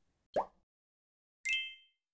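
Two short edited-in transition sound effects: a quick pop that rises in pitch, then about a second later a bright chime with a few high ringing tones that fades out quickly.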